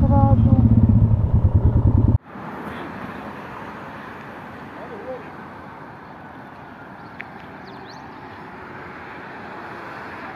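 Benelli VLX 150 motorcycle engine running at low speed, loud and fast-pulsing, cut off suddenly about two seconds in. After the cut there is only a faint steady background hiss.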